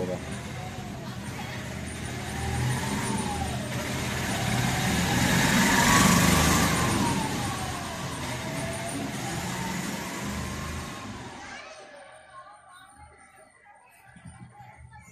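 A passing road vehicle, growing louder to a peak about halfway through and then fading away, with a faint wavering tone that rises and falls slowly over it.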